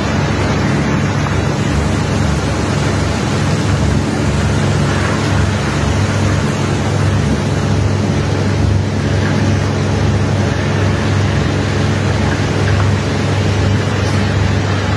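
Machinery running steadily during barge unloading: a deep engine hum under a loud, even rushing noise.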